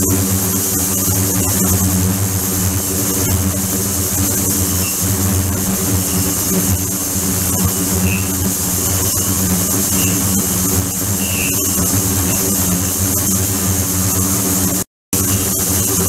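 Ultrasonic tank running: a steady electrical-mechanical hum with a high hiss over water churning in the bath. The sound cuts out for an instant near the end.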